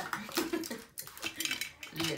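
Makeup brushes and containers clattering as they are picked up and set down on the table: a string of small irregular clicks and knocks.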